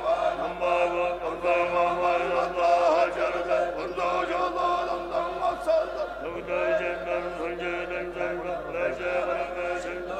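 Assembly of Buddhist monks chanting prayers together in unison: a continuous recitation of many male voices over a low held pitch.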